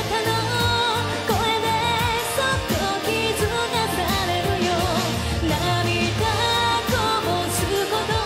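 Woman singing a J-pop song into a handheld microphone, backed by a live band with drum kit, electric guitar and keyboards, the drums keeping a steady beat.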